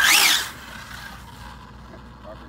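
Arrma Infraction RC car's 8S brushless electric motor giving one short rev, a high whine that rises and falls back within about half a second, then dies away to a faint hiss.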